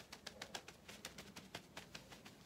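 Faint crinkling of a paper napkin pressed and dabbed against the cheek, a scatter of small soft clicks.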